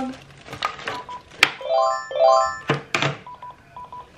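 An electronic chime sounding in a repeating pattern: a short steady beep, then two quick chirping tones, with the beep coming again near the end. A sharp click and a couple of dull thumps fall between them.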